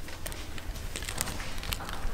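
Clothes hangers clicking and scraping on a rack rail as garments are pushed along it, with scattered light clicks over a low steady hum.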